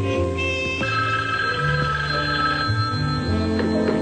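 Music of held notes that change in steps, with a telephone bell ringing over it.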